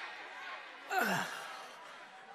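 A short groan from a cartoon character's voice about a second in, its pitch falling steeply, over faint background sound.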